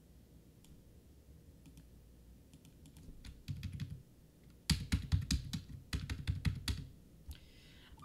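Typing on a computer keyboard: a few light key clicks at first, then a quicker run of louder keystrokes from about the middle, stopping shortly before the end.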